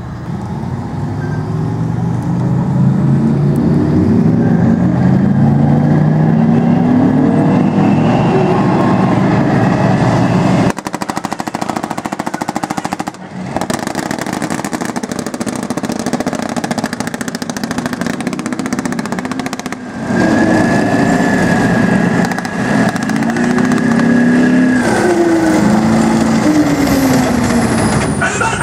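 Type 90 and Type 74 main battle tanks on the move: their diesel engines rev up and down in pitch, and in the middle stretch a dense, rapid clatter of steel tracks dominates.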